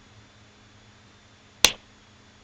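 A single sharp slap of an open hand on a bare, shaved scalp, about one and a half seconds in.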